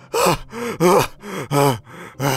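A man panting hard, out of breath: four loud gasping breaths about half a second apart, each voiced and falling in pitch.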